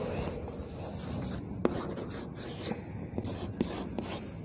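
Faint scraping and a few light taps of chalk on a blackboard as a tick mark is made.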